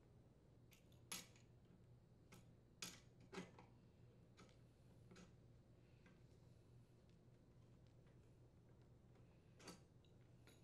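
A few faint metallic clicks and taps of a wrench and socket on the ignition coil's mounting bolt and post, scattered in near silence, most in the first few seconds and one near the end.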